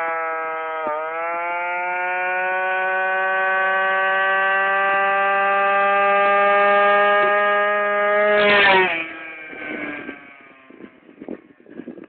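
Yamaha Aerox scooter engine pulling hard under open throttle, a steady high drone that climbs slowly in pitch as the scooter gathers speed, with a brief dip about a second in. About three seconds before the end the throttle is closed and the engine sound falls away quickly, leaving only faint scattered knocks and rustle.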